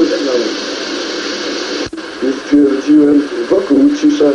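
A voice speaking through thin, tinny, hissy audio over steady tape hiss, with a sudden dropout about halfway through.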